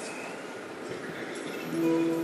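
Faint hall murmur, then about a second and a half in a band instrument starts a steady held note, one pitch sounding with its octave.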